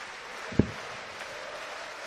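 A dart thudding into the dartboard once, about half a second in, over the steady murmur of an arena crowd.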